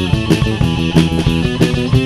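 Rock band music: guitars over a drum-kit beat.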